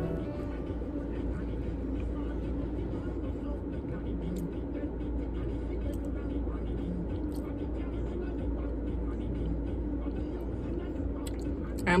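Steady low rumble in a parked car's cabin, with a few faint clicks of a plastic spoon against a paper soup cup.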